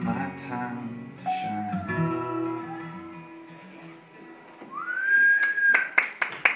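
Acoustic guitar and Multi-Kord steel guitar play the song's final notes, with a sliding steel note about a second in, then ring out and fade. Near the end someone in the audience whistles, one note rising and then held, and applause begins.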